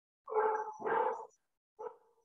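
A dog barking over a video-call connection: two barks in quick succession, then a short one near the end.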